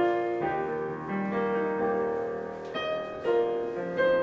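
Digital piano playing a slow hymn in held chords, changing chord every second or so.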